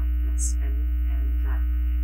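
Steady, loud low electrical hum, a mains hum running through the microphone and recording feed.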